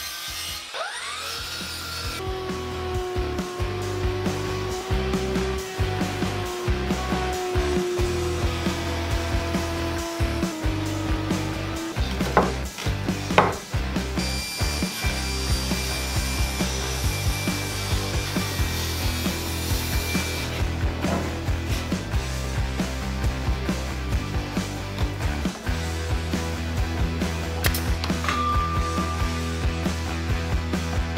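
Power saws cutting wood: a sliding miter saw, then a table saw ripping a plywood sheet, with background music playing underneath.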